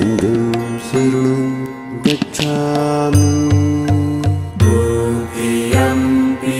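Devotional chant sung over instrumental backing, long held vocal notes that bend in pitch over a pulsing bass line and light percussion.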